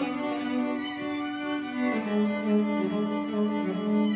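String quartet of violins, viola and cello playing long held bowed notes, with a lower note coming in strongly about halfway through.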